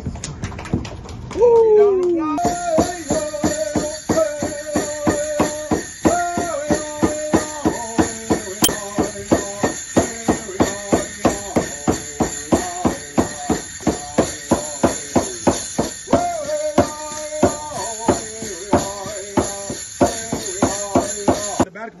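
Native American rawhide hand drum struck with a beater in a steady beat of about two to three strokes a second, with a singer chanting over it in long held notes after a high opening call that slides down. A jingling rattle runs along with the drum, and the music cuts off suddenly just before the end.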